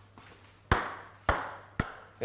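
Three sharp metallic pings, each with a short high ringing tail, as small thrown pieces strike metal pots on a table. The first is the loudest.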